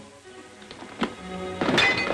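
Orchestral film score that comes in loudly in the second half, with a single sharp knock about a second in.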